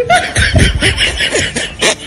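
People laughing in a quick run of short bursts.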